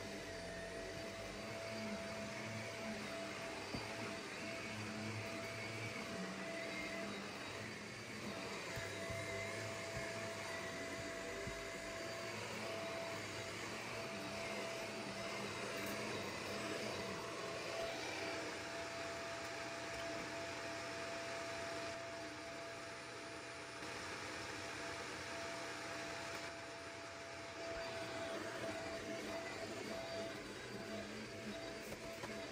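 Upright vacuum cleaner running steadily on carpet, a continuous motor noise with a constant whine.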